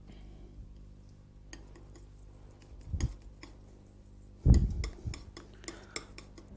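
Metal palette knife clicking and scraping on a paint palette while oil colour is mixed, with two duller knocks about three and four and a half seconds in.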